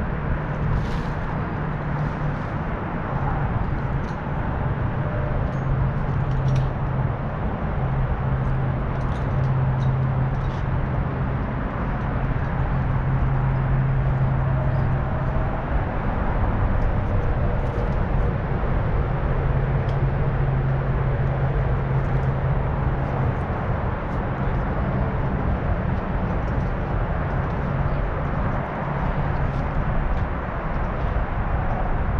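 Steady outdoor background noise with a low hum that fades in and out over several seconds at a time, and a few faint clicks scattered through it.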